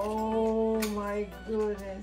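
A woman's voice in a drawn-out exclamation that glides up and holds one note for just over a second, followed by a shorter note, over background music with a steady beat.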